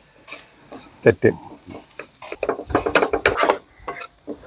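Food sizzling in a frying pan while a spoon stirs it, with irregular clicks and taps of the utensil against the pan.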